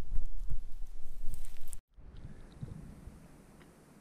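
Wind rumbling on the camera microphone with a few soft knocks, cutting off abruptly just under two seconds in; after that, only a faint outdoor background with a few light ticks.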